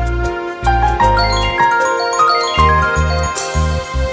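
Background music: a tinkling, bell-like melody of short notes over repeated low bass notes, with a brief hissing cymbal-like swell near the end.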